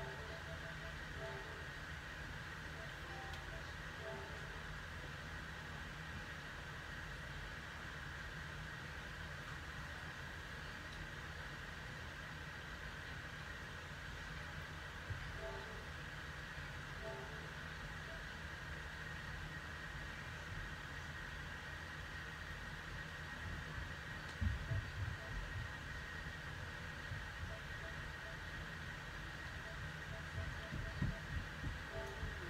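Electric fan running close by: a faint, steady whirring drone with a low hum. A few soft low thumps come about 24 seconds in.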